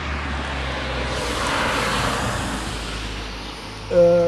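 A car passing by on the road. Its tyre and engine noise swells to its loudest about two seconds in, then fades away.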